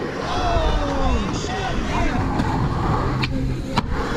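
Skateboard wheels rolling over a concrete skatepark floor, a steady low rumble, with voices calling out over it.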